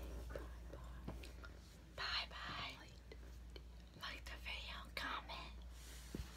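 A woman whispering in two short breathy stretches, one about two seconds in and a longer one about four seconds in.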